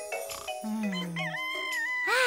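Rooster crowing: a cock-a-doodle-doo that starts about a second in with a long held note and drops in pitch at its end, over light music.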